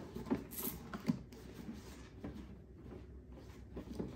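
Soft knocks and rubs of a pop-up cardboard gift box being closed and handled on a table, a few light taps in the first second or so.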